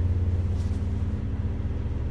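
Car engine running steadily, a low hum heard from inside the cabin.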